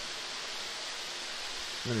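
A steady, even rushing hiss with no distinct knocks or tones.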